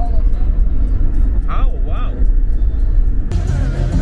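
Steady low rumble of a car's engine and road noise heard from inside the cabin, with a brief voice about one and a half seconds in. Near the end it cuts abruptly to a street with music playing.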